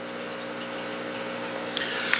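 Steady hum of running aquarium equipment, several even tones under a soft hiss, with a few faint clicks near the end.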